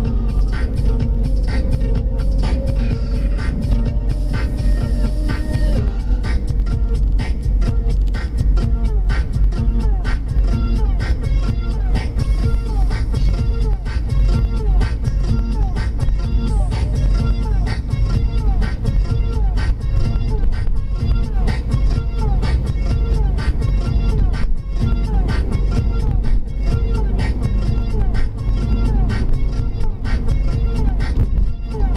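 Electronic dance music from the car radio with a steady fast beat and a voice, over a constant low road and engine rumble in the cabin.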